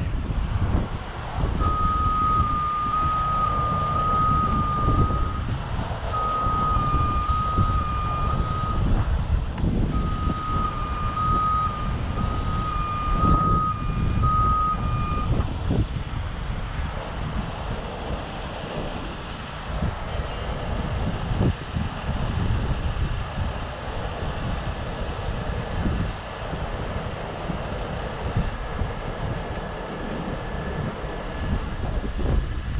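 Heavy rotator tow truck's diesel engine running steadily under load as its boom swings a suspended 40 ft shipping container. A vehicle warning beeper sounds in a long run of repeated beeps, with two short breaks, and stops about halfway through.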